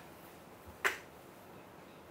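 Quiet room tone with a single short, sharp click a little under a second in.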